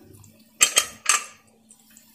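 Aluminium pressure cooker lid clanking against metal as it is taken off the cooker: three sharp knocks close together about half a second in, each ringing briefly.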